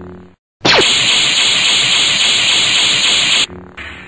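A loud hissing, static-like sound effect over the soundtrack: after a brief dropout in the background music it starts with a quick falling sweep, runs for nearly three seconds and cuts off suddenly, and the music comes back.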